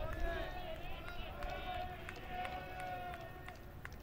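Ballpark ambience: faint, distant voices and chatter from spectators in the stands, with no loud event.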